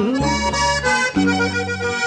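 Norteño accordion playing an instrumental break between sung verses of a corrido, over held bass notes.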